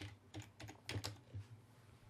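Faint computer keyboard keystrokes, about half a dozen quick key presses finishing a typed search term, stopping about one and a half seconds in.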